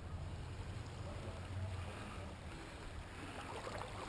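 Faint, steady background sound of a shallow creek: a low rumble with a light, even hiss of moving water.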